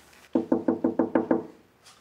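Rapid knocking on a wooden office door, about seven quick knocks.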